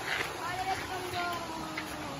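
An indistinct voice, too faint for words, over the rustle of leaves brushed aside while walking through dense undergrowth.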